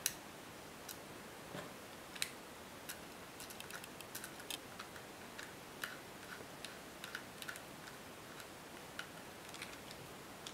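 Faint, irregular small clicks and taps of a metal drive bracket being fitted onto a 2.5-inch SSD and a small screwdriver turning the bracket screws.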